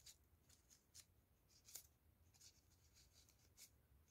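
Near silence with a few short, faint rustles of foamiran (thin craft-foam) rose petals being handled and pressed between fingers.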